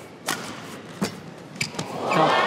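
Badminton rally: a few sharp racket strikes on the shuttlecock, spaced irregularly, over the quiet hum of the arena.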